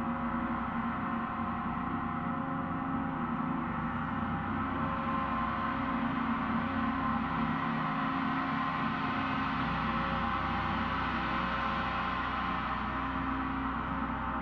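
Large Paiste gong played with a soft felt-headed mallet, giving a continuous, many-toned ringing wash with no distinct strikes. It grows a little louder around the middle.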